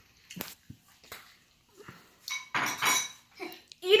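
A few light clinks and knocks of tableware on a glass tabletop, then a short, busier patch of clatter about two and a half seconds in.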